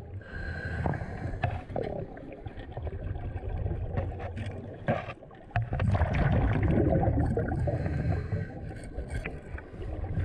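Underwater sound of a scuba diver: rumbling exhaled bubbles from the regulator, with a long loud burst in the second half, and scattered small clicks and knocks.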